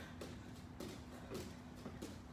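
Faint soft thuds of bare feet landing on a rubber gym mat during jumping jacks, a landing roughly every half second, over a steady low hum.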